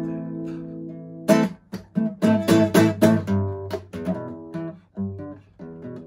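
Acoustic guitar: a strummed chord rings and fades, then about a second in a rhythmic strumming pattern starts, with a quick run of chords followed by lighter strums.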